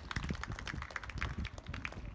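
A quick, irregular run of small clicks and taps close to the microphone, over a low wind rumble.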